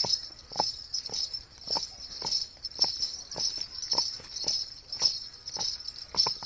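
Horse's hooves striking a gravel road in a slow, high-stepping trot: regular knocks about two a second. A high, pulsing chirring runs behind them.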